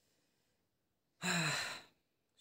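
A man's breathy, voiced sigh, starting a little past the middle and lasting under a second, its pitch falling slightly.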